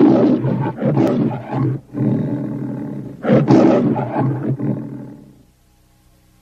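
The MGM studio logo's lion roaring: loud roars at the start and again about three seconds in, with a weaker one between, fading out shortly before the end.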